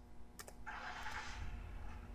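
A single faint computer keyboard key click, followed by a brief soft hiss.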